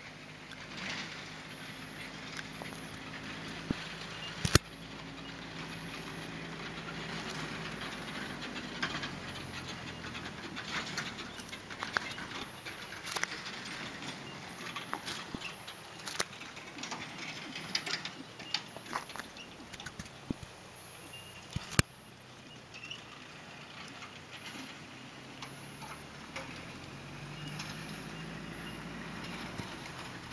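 Hooves of a Thoroughbred gelding falling on a sand arena as it is ridden, heard as soft irregular beats over outdoor background noise, with two sharp clicks, one about four seconds in and one a little past twenty seconds.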